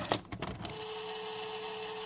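VHS tape-rewind sound effect: a few quick clicks, then a steady mechanical whir with tape hiss and a single held tone.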